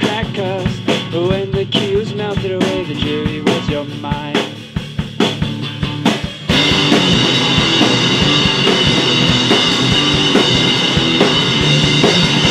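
Instrumental section of an indie rock song played by a guitar, bass and drum kit band. A melodic line bends over the bass and drums. About six and a half seconds in, the band abruptly gets louder and fuller, with a bright wash over the top.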